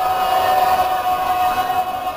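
Group of voices on stage holding one long high note together in a sung or chanted "aah", over a noisy hall.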